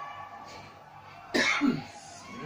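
Music from the TV dies away into a lull, and about a second and a half in a person gives one short cough.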